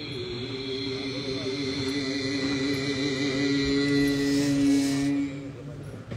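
A single long held note, sung or blown, with a wavering pitch. It swells louder and cuts off about five seconds in, over a steady low drone.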